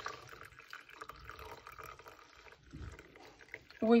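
Hot coffee being poured into a glass mug: a steady splashing stream that thins out after about two and a half seconds.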